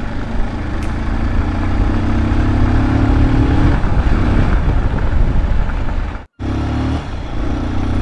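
Motorcycle engine running as the bike rides off, with a heavy low rumble of wind on the microphone. The sound cuts out briefly about six seconds in.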